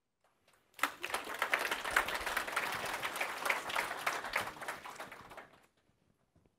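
Audience applauding, breaking out suddenly about a second in and dying away near the end.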